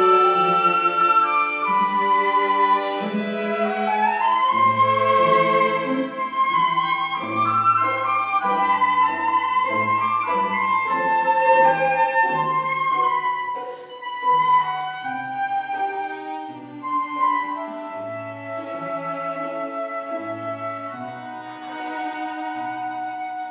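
Live chamber music: a pavane for psaltery, flute and string quartet, with the flute over plucked psaltery and bowed violins, viola and cello. The music turns softer about two-thirds of the way through.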